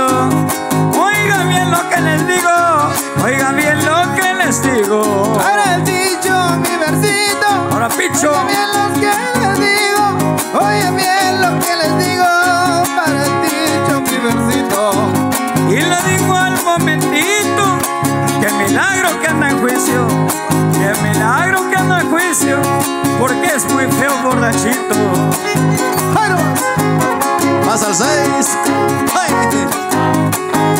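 Huasteco string trio playing dance music: a violin melody with sliding notes over a steady strummed rhythm from a small jarana and a larger bass guitar.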